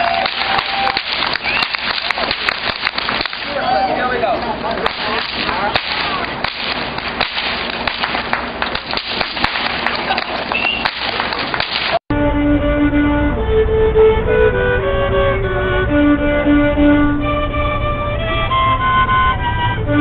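A whip cracking many times at irregular intervals over street noise and voices. After an abrupt cut about twelve seconds in, a solo violin plays a melody of held notes.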